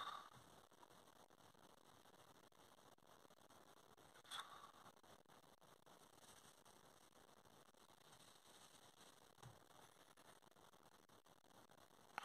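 Near silence: room tone, with one faint short sound about four seconds in.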